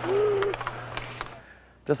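A man's hooting "ooh" at practice, one held voice call lasting about half a second, followed by a few sharp clicks over a steady low hum. The sound dies away to quiet just before speech begins at the very end.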